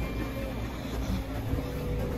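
Outdoor winter ambience: a steady low rumble of wind on the microphone, with faint voices of people nearby.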